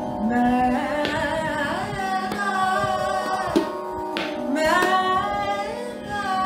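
A woman singing a Holi song with ornamented, gliding phrases, accompanied by a few tabla strokes over a steady sustained drone.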